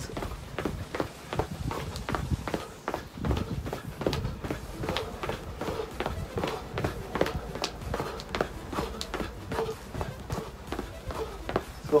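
Footfalls of high-knee running in place: trainers landing on patio paving in a quick, steady rhythm of light thuds.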